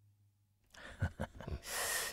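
The faint, dying tail of a low final note from a percussion track, then near silence; about three-quarters of a second in, mouth clicks and a sharp intake of breath come just before someone speaks.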